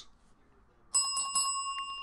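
A small metal bell struck three times in quick succession about a second in, then left ringing with a clear tone that fades slowly. It is rung to celebrate a big hit.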